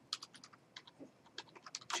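Faint, irregular keystrokes on a computer keyboard as text is typed out, about a handful of key clicks a second.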